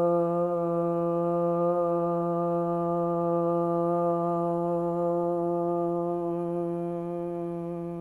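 A long chanted 'Om', held on one steady pitch and tapering off near the end: one of three Oms sung to close a yoga practice.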